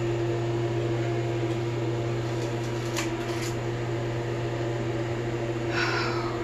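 A steady mechanical hum throughout: a low drone with a steady higher tone over it, and two faint clicks about halfway through.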